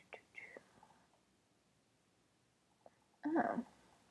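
Only a woman's voice: soft whispering under her breath, then a short voiced murmur a little after three seconds in.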